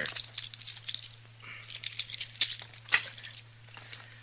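Handcuffs being unlocked and taken off: scattered metallic clicks and rattles, with two sharper clicks near the end. A steady low hum from the old recording runs underneath.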